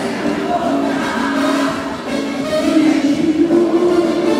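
Live band music with a female singer holding long sung notes over the accompaniment.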